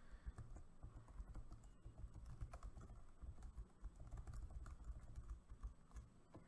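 Faint, quick typing on a computer keyboard: a dense, irregular run of keystrokes, each a short click with a low thud.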